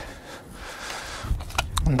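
Steel garden fork worked into loose soil, the tines scraping through it, with a few small clicks and knocks about one and a half seconds in.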